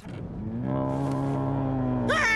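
A long, low, steady drone from the cartoon's soundtrack. It rises slightly as it begins, then holds one pitch.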